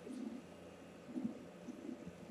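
Quiet room with a faint low throat hum from a man, once near the start and again a little past a second in.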